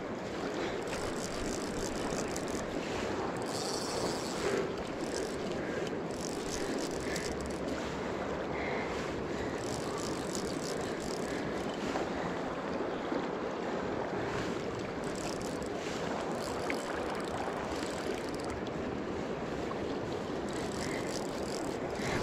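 Steady rush of a fast, shallow river riffle flowing close by.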